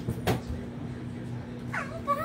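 Steady low hum with two sharp clicks near the start, then a short high whine that slides down in pitch near the end.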